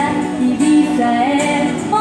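Live music: a young woman singing a melody into a microphone, accompanied by acoustic guitar.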